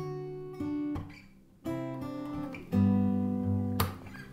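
Acoustic guitar finger-picked: chord shapes plucked in turn, each group of notes ringing on until the next pluck, with a sharper attack near the end.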